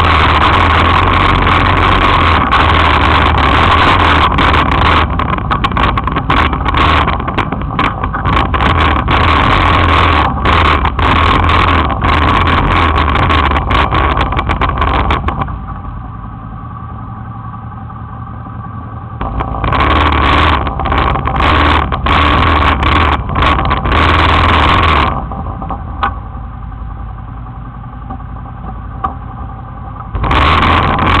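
Can-Am 400 quad's engine running as it fords a river about a metre deep, with the rush and splash of water around it. The sound drops to a quieter stretch twice, about halfway and again near the end.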